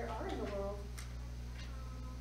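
A young child's high-pitched voice in a short utterance, over a steady low electrical hum.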